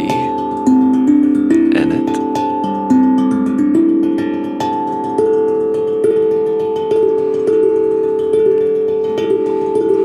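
Steel tongue drum struck with mallets, playing a slow melody of ringing notes that overlap and hang on, a new note about every second, the later strikes softer.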